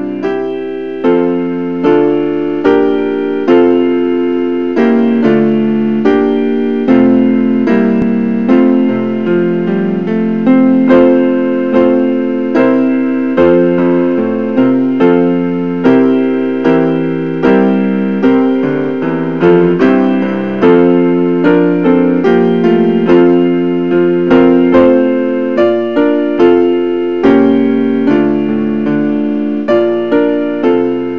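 Solo piano music: notes and chords struck at an unhurried, even pace, each one dying away before the next.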